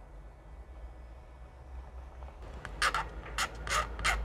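A metal hobby tool scraping and mashing plastic sprue in a small dish of liquid plastic cement to make sprue goo. It starts nearly three seconds in, as a quick run of short scratchy strokes, several a second.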